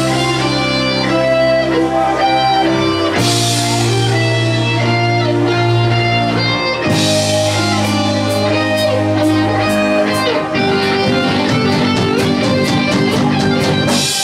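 Live rock band playing loudly at pub volume in a guitar-led instrumental passage, with electric guitar chords that change every few seconds. About seven seconds in, a faster, busier rhythm takes over.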